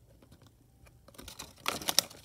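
Folded paper instruction leaflet rustling and crackling as it is handled and turned: a few faint ticks, then about a second in a fast run of crisp crackles that grows louder toward the end.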